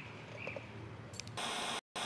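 Faint outdoor ambience with a chirp at the start. About one and a half seconds in, a sudden, louder burst of TV-static hiss begins for the logo sting, cutting out for an instant just before the end.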